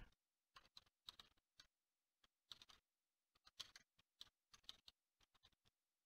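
Faint, irregular keystrokes on a computer keyboard as a line of text is typed.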